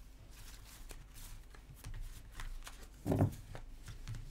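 Tarot cards being shuffled and handled by hand: a run of light flicks and slides of the cards, with one louder soft thump about three seconds in.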